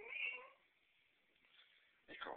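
Calico cat meowing once, a short call of about half a second.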